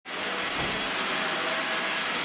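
A steady, even rushing noise, as of moving air, with a faint hum underneath.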